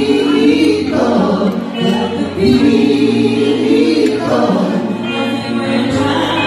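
Live band playing a song, with a woman and a man singing together over electric guitar and bass notes.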